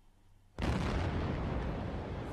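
A bomb exploding in an apartment building, heard from about 150 metres away: a sudden blast about half a second in, followed by continuing loud noise.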